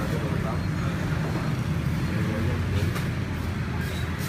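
Steady low rumble of background noise throughout, with faint voices mixed in.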